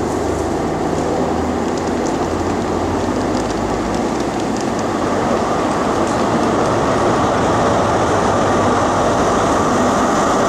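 CrossCountry HST's Class 43 diesel power car running into the platform, its engine and wheels getting louder as it comes alongside.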